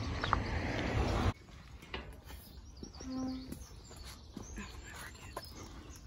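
Faint birds chirping over a quiet outdoor background, with a short low steady tone about three seconds in. For just over the first second a steady rushing noise covers everything, then cuts off abruptly.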